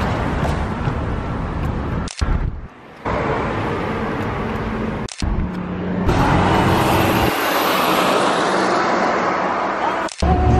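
Street traffic: cars passing on a town road, heard in several short outdoor clips that are cut together abruptly. Each cut leaves a brief gap in the sound.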